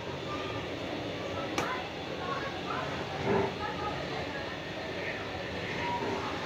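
A hand tossing flour-coated raw potato sticks in a steel bowl with a soft, steady rustle, and one sharp click about one and a half seconds in. Faint voices can be heard in the background.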